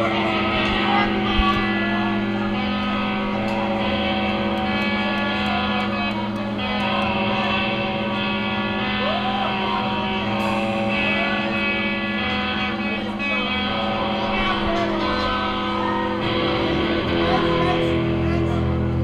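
Live rock band playing, with electric guitars holding long, sustained chords over a steady low drone.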